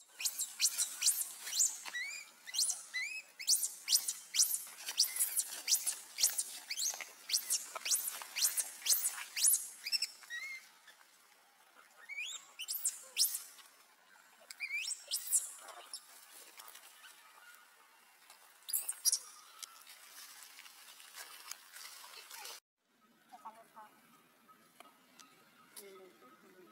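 Infant macaque squealing: a quick run of short, high-pitched rising squeaks, about two a second, that thins out to scattered squeaks after about ten seconds.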